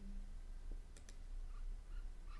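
A few faint, short clicks over a low, steady hum.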